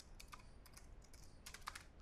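Faint computer keyboard keystrokes, a run of quick taps in two short bursts, as a password is typed.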